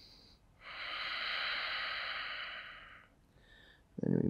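A man breathing audibly through a held yoga stretch: a short, faint breath ends just after the start, then a longer, louder one of about two and a half seconds follows. This is the final breath before the pose is released.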